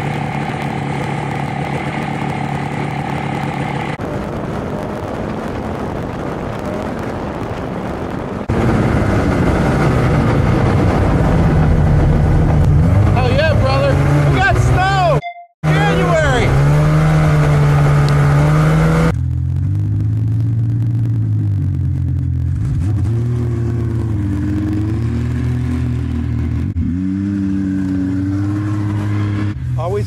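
Turbocharged Polaris Boost snowmobile's two-stroke engine, heard across several cut-together riding clips, revving up and down in pitch, with a short dropout about halfway through and slower running near the end. Wind noise rushes on the microphone.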